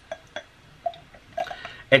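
Coffee creamer poured from a plastic bottle into a drinking glass: two light clicks, then a few soft glugs.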